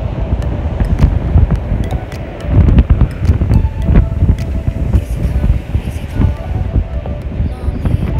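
Strong wind buffeting the phone's microphone, a heavy rumble that comes in gusts, loudest a few seconds in.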